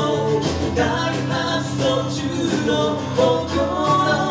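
Live acoustic duo: acoustic guitar strummed with drums keeping a steady beat, under sung vocals.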